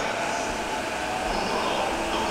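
Steady running noise of an electric commuter train approaching in the distance, mixed with platform background noise.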